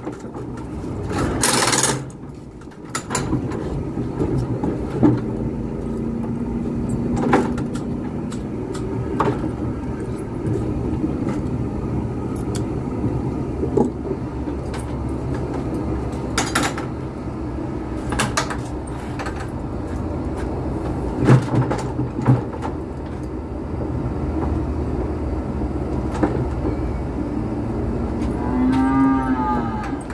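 Wooden cattle squeeze chute with its gates and levers knocking and clanking at irregular intervals over a steady low rumble. A weaned calf bawls once near the end, its call rising and then falling in pitch.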